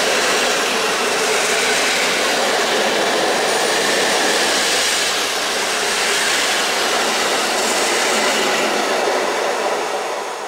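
Passenger train coaches running past at speed: a loud, steady rush of wheels on rail and air that begins to die away near the end as the last coach clears.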